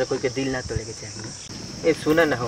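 Steady high-pitched chirring of insects in the surrounding grass, running unbroken under a man's voice for about the first second.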